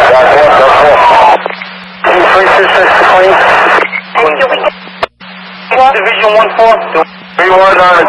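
Fire-department dispatch radio traffic heard over a scanner. The first half is loud, noisy and largely unintelligible; clearer radio voices come in from about six seconds. A steady low hum runs underneath.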